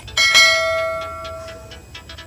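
Notification-bell chime sound effect from a subscribe-button animation: a single struck chime that rings and fades away over about a second and a half.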